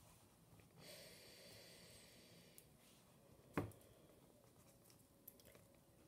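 Near silence, with faint rustling of a paper cutout being slid into place on a sheet of paper, and one brief click about three and a half seconds in.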